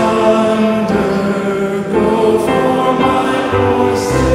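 A group of voices singing a slow hymn in harmony, holding each chord before moving to the next.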